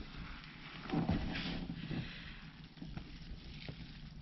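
Faint rustling and a few light knocks from a hand reaching into a plastic worm bin and digging into crumbly worm castings, a little louder about a second in.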